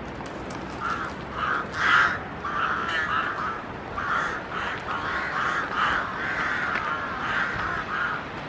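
Rooks cawing at their nesting colony: many harsh calls following one another from about a second in, the loudest around two seconds in.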